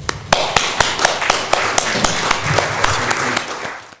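Audience applauding, individual claps standing out, starting about a third of a second in and fading out near the end.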